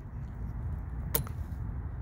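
A single sharp plastic click about a second in, as a fuse puller or spare fuse is snapped out of its clip in a car's under-hood fuse box, over a low steady rumble.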